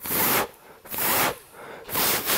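Three short puffs of breath, about a second apart, blown at the ducted propellers of a small toy quadcopter to test whether they spin freely.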